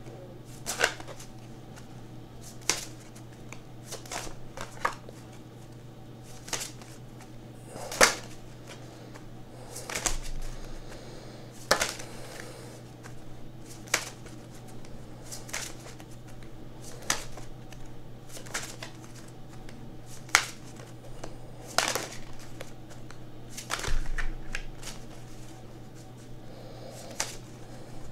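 A small deck of affirmation cards being shuffled by hand: sharp card snaps every second or two, at irregular spacing, over a steady low hum.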